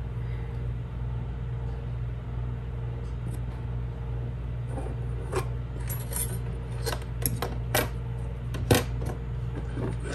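Metal forks clinking and clicking as they are handled and set down, several light strikes in the second half, over a steady low hum.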